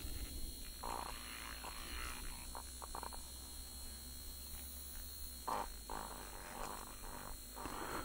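Norpro battery-powered handheld mixer wand running with a low steady hum while it stirs e-liquid in a small bottle, with a few light clicks of the whisk against the bottle; the hum stops shortly before the end.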